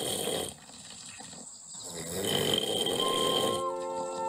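Two men snoring: a short snore at the start and a longer one about two seconds in. Music comes in near the end.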